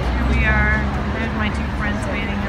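People talking nearby over a steady low engine hum from a vehicle running close by.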